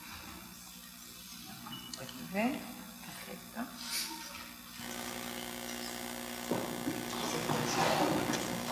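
Low, off-microphone talk between two people, with a short laugh near the middle, over steady room hum and hiss.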